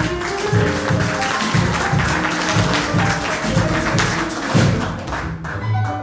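Live small-group jazz: acoustic piano, upright double bass and drum kit playing together, the bass notes falling about twice a second under piano lines and cymbals.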